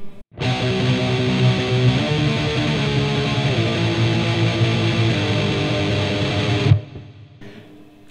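Distorted electric guitar (a Fender Stratocaster tuned about 30 cents above concert pitch) tremolo-picking power chords on the two lowest strings, moving through a short run of chord changes. It starts a moment in and stops abruptly about a second before the end.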